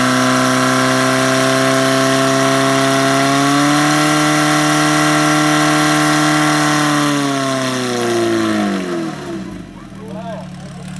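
Portable fire pump's engine running at high revs, driving water to the hose jets. Its pitch rises slightly about three and a half seconds in and holds, then falls away from about seven seconds as the engine is throttled back, dropping to a low idle near the end.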